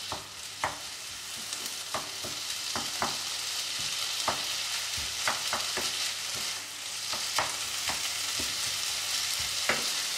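Diced onion, carrot and minced meat sizzling in a non-stick frying pan, stirred with a wooden spatula that scrapes and knocks against the pan irregularly, about once or twice a second.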